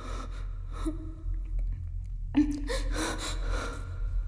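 A woman gasping in fright: a short voiced gasp about a second in, then a longer gasp past two seconds that trails into heavy, shaky breathing.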